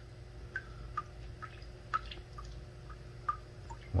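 Water dripping from a cleanup sluice: about a dozen single drops plinking at irregular intervals, over a faint steady hum.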